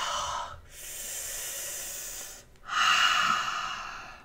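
A woman breathing deeply and forcefully through her open mouth, straining with fists clenched: a loud breath, a longer, softer one, then another loud breath near the end.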